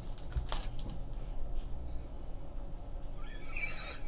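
A few light clicks from a hard plastic card holder being handled and turned over in the hands, with faint scattered ticks. Near the end comes a short breathy laugh.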